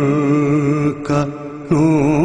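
Vocal chanting of a long held 'O' in an Urdu devotional refrain, with no instruments. The held note breaks off briefly about a second in, then resumes on a new held pitch.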